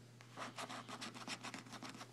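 A coin scratching the coating off an instant lottery scratch-off ticket: a quick run of short, faint scratching strokes, about seven or eight a second, starting about half a second in.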